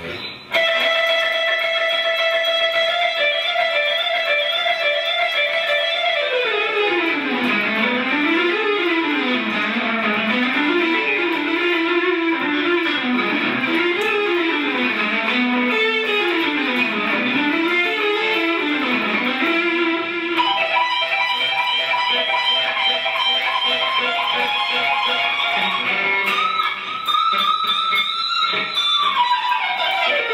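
Electric guitar, a Stratocaster-style solid-body, playing a harmonic-minor lead line: a long held note, then fast repeating up-and-down runs, and near the end a slide down the neck.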